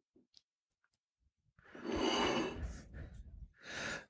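A man's audible sigh close to the microphone, starting a little under two seconds in and lasting about a second, followed near the end by a short, quieter breath in.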